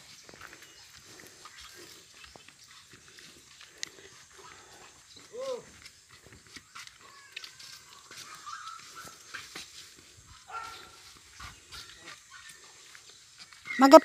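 Quiet outdoor background with faint scattered clicks and a few distant animal calls, the clearest a short call that rises and falls about five and a half seconds in.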